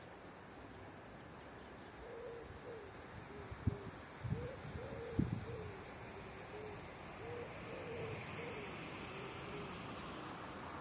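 A bird cooing, a run of short low hooting notes at about two a second, over steady wind noise. A few thumps of wind on the microphone come in the middle and are the loudest sounds.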